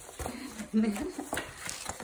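Cardboard shipping box being pulled and torn open by hand: a run of short, sharp rips and scrapes, with a brief murmur of voice in between.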